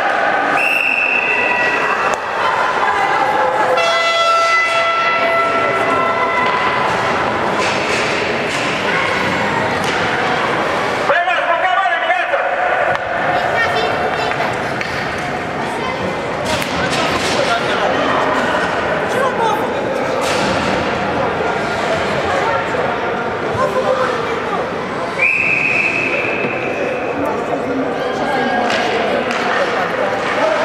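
Ice hockey game sounds in an indoor rink: voices, with sticks and the puck clacking and banging against the boards. A referee's whistle blows twice, about a second in and again near the end.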